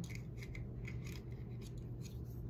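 Faint plastic clicks and rubbing from a white plastic corner rounder punch being handled as a loose part is fitted back onto it, over a steady low hum.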